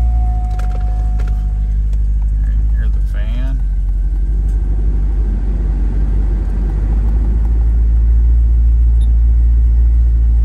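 Chevrolet Corvette 5.7-litre V8 idling steadily, heard from inside the cabin, a low even rumble that grows slightly louder toward the end.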